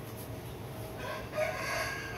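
A rooster crowing faintly: one drawn-out call beginning about a second in.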